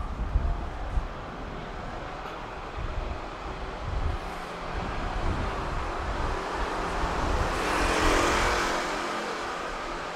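Street ambience with a car passing along the road: its tyre and engine noise builds to a peak near the end and then fades.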